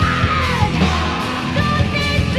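Heavy metal music from a 1987 recording: distorted electric guitars over bass and drums, with a high line sliding down in pitch in the first second.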